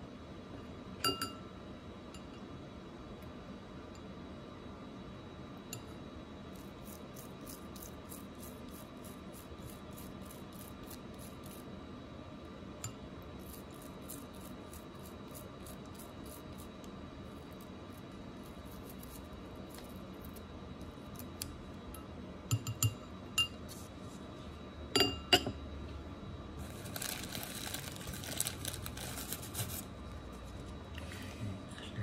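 A small gold ring clinking against a cut-glass crystal bowl, the glass ringing briefly after each clink: once about a second in, then several times in quick succession past the two-thirds mark. In between, faint rapid scratching of a small brush scrubbing the ring, and a steady hiss near the end.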